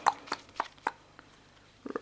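Sleeved trading cards being handled over a playmat: a quick run of light clicks and taps in the first second.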